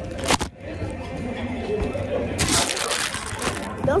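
A sharp knock close to the microphone, then about a second of rustling or crinkling handling noise, over faint restaurant chatter.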